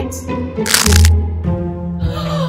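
Background music with a short, sharp crunch of a cookie being bitten just under a second in.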